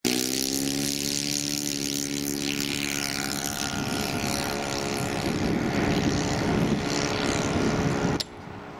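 Radio-controlled model Spitfire's engine and propeller running during takeoff and climb-out. A steady engine tone dips slightly in pitch over the first few seconds, then turns rougher as the plane climbs away.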